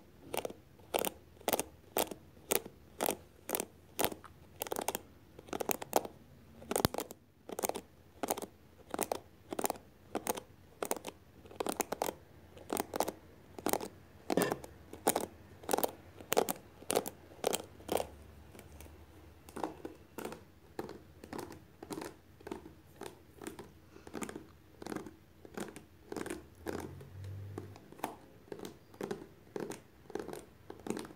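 Long hair being brushed close to the microphone in regular scratchy strokes, about two a second, growing softer in the last third.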